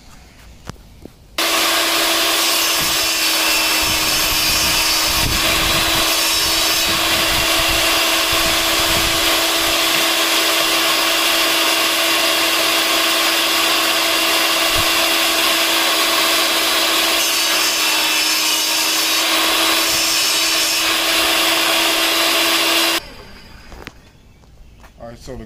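Portable jobsite table saw making a test cut along the edge of a wooden board fed against the fence, to find the blade setting for a three-eighths-inch tongue. The saw starts suddenly about a second and a half in, runs at a steady even pitch with the blade cutting through the wood, and cuts off suddenly about a second before the end.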